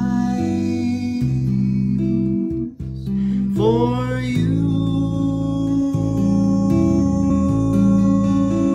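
Live solo performance of a slow 1930s jazz ballad on a touch-style tapped stringboard: a bass line that changes note every half second or so under held chords, with a man singing. About halfway through, after a brief dip, his voice slides up into a long held note.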